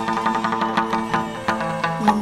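Chầu văn (hát văn) ritual accompaniment played without singing: a plucked đàn nguyệt (moon lute) melody over sharp percussive clicks that keep a steady beat.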